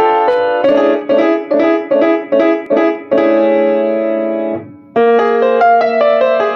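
Solo piano improvisation: a run of short, detached chords, about two or three a second, then a held chord that dies away almost to silence before the playing picks up again near the end.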